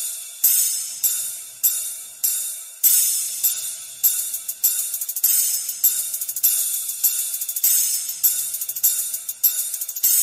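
Treble test track on a large sound system: bright cymbal and hi-hat strikes a little under two a second, each ringing off, with hardly any bass under them.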